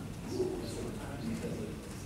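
Low voices talking in a large room, with a short low tone about half a second in.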